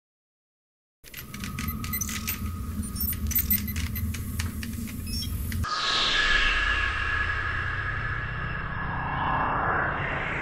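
Sound-effect intro to a hip-hop track. After a moment of silence comes a crackling, clicking noise over a low rumble. About halfway it switches to a steady tone with a sweep that slowly falls in pitch.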